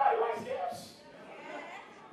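Speech in a large hall: a voice is loudest in the first second, then fades to a low murmur.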